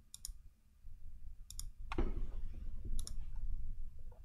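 Four short, sharp clicks spread over a few seconds, three of them quick double clicks, over a low steady hum.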